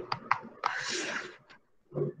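A person drawing in a quick breath between phrases, preceded by a couple of small mouth clicks.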